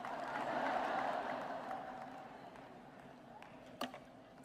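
Audience applause and crowd murmur fading away over about two and a half seconds, then a single short click near the end.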